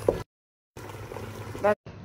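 Low steady background hum broken by about half a second of dead silence at a cut, then a brief snatch of a woman's voice near the end.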